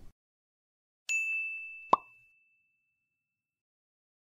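An edited-in sound effect: a single high ding about a second in that fades away, with a short pop just under a second later.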